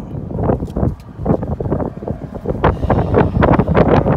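Wind buffeting the phone's microphone in irregular gusts, mixed with knocks from the phone being handled.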